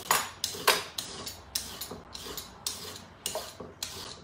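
Hand vegetable peeler scraping down a raw carrot: a quick run of short scraping strokes, about three a second.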